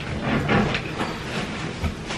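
Irregular rustling and light knocks of bedding and household items being handled and moved about.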